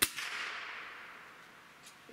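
A single shot from a .177 Gamo Swarm Magnum Gen3i break-barrel air rifle, firing a pellet at about 1,166 feet per second. It is a sharp crack at the very start, with a ringing tail that fades over about a second and a half.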